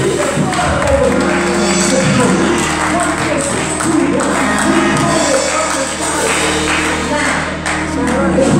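Gospel church music: held instrumental chords with singing and a tambourine.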